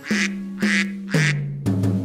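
Three cartoon duck quacks, evenly spaced, over the instrumental backing of a children's song.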